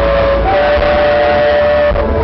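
Live acoustic country band music: a long note held steady in two-part harmony, with the low bass dropping back under it.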